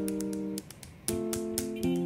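Background music of strummed guitar chords: a chord rings at the start and fades briefly, then a new chord is struck about a second in and another near the end.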